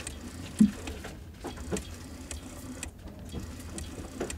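Gloved hands handling a Nikon AF-S NIKKOR 85mm f/1.8G lens on a DSLR body: soft rubbing with scattered small clicks and ticks, and one soft thump about half a second in.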